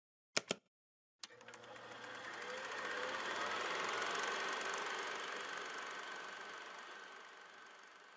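Intro sound effect: a quick double click, then a machine-like whirr with fine, fast ticking that swells to a peak about halfway through and slowly fades away.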